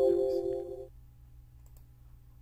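Windows 10 system chime for the 'Format Complete' message box: a held chord of several tones that fades out about a second in. Faint mouse clicks follow as the box is dismissed.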